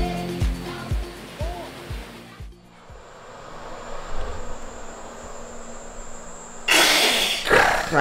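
Background music with a steady beat of about two thumps a second, fading out in the first two and a half seconds. It gives way to quiet indoor room noise with a faint high whine. Near the end comes a short, loud rush of noise lasting under a second.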